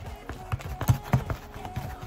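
A spoon stirring thickening glue-and-borax slime in a plastic bowl, giving a few irregular knocks against the bowl.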